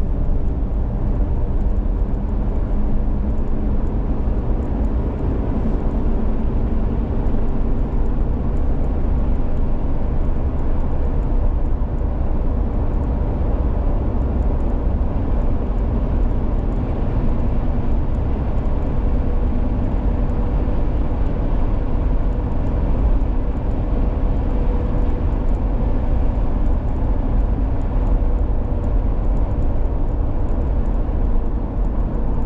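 A car driving steadily along an open road: continuous low rumble of tyres, wind and engine, with a faint steady hum.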